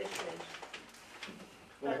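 Low murmured voices during a show-of-hands vote in a small room, with faint clicks. A man starts speaking loudly near the end.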